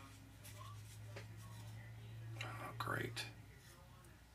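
Faint whispered muttering by a man, loudest about two and a half to three seconds in, over a low steady hum, with a few soft clicks from a cloth rag being rubbed over a painted plastic model part.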